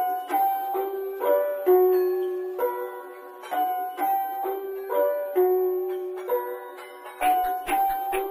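Background instrumental beat: a looping melody of short plucked notes with no drums, until a kick drum comes back in about seven seconds in.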